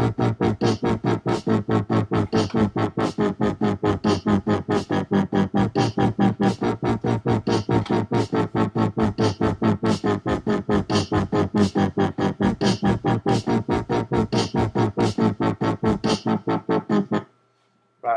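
Dubstep wobble bass from Logic Pro's ES2 software synth playing back: a heavy synth bass pulsed by an LFO into a fast, even wobble. The playback cuts off suddenly near the end.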